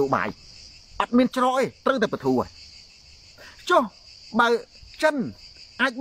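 Steady high-pitched chirring of insects that runs on unbroken under and between a man's talk.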